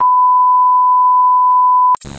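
Steady, loud high-pitched test-tone beep of a TV colour-bars glitch transition effect, held for about two seconds on one unchanging pitch and cut off by a short crackle of static at the very end.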